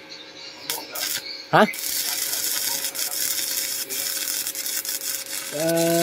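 Stick-welding arc from an inverter welding machine, struck about a second and a half in, then crackling and sizzling steadily as the electrode burns against the steel plate.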